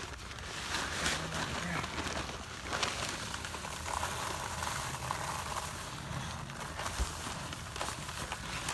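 Dry concrete mix pouring out of an 80 lb bag into a post hole: a steady hiss of falling grit with the bag rustling, and a short low thump about seven seconds in.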